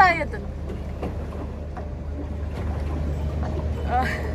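Steady low rumble aboard a small boat on the water, with a woman's call gliding down in pitch right at the start.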